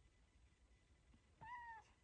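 Domestic cat giving one short, faint meow about one and a half seconds in while being held up in someone's arms, a complaint at being picked up.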